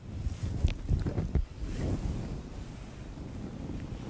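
Breath and throat noises close on a headset microphone. Several puffs of air rumble on the mic in the first second and a half, then fainter breathing follows.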